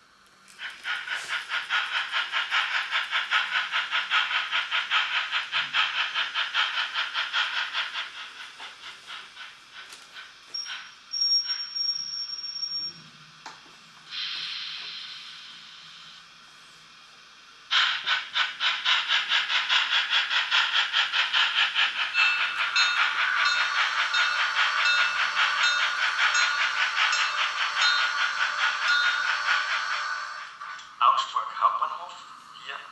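Märklin H0 model steam locomotive's digital sound module playing a rapid, even chuff through the model's small speaker. The chuffing fades around eight seconds in and is followed by a high steam-whistle blast of two or three seconds and a burst of steam hiss. Loud chuffing starts again about eighteen seconds in.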